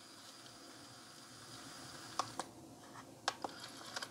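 Panasonic RQ-NX60V personal cassette player rewinding a tape, a faint, very quiet whir of the tape mechanism. In the second half come several light clicks as the mechanism switches from rewind to play.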